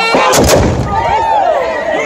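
A volley of black-powder muskets fired together by tbourida horsemen: one short, ragged blast about half a second in, followed by the rising cries of the crowd.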